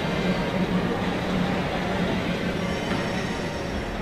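Steady airport ambient noise: a low hum under an even rushing hiss, easing slightly near the end.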